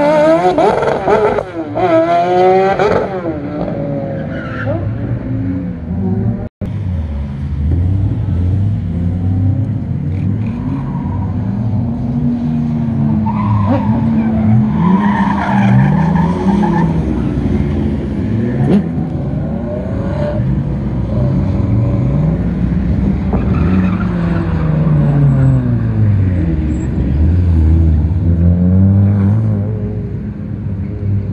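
Racing car engines on a circuit. An open-cockpit sports prototype accelerates out of a corner, its engine note climbing in steps through quick upshifts. After a brief dropout, several cars lap the track, their engine notes rising and falling as they approach and pass.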